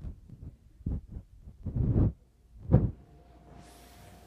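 Irregular low thumps and rubbing rumbles of a microphone being handled, about seven of them, the loudest near the end. After that a faint steady hum-like tone comes in.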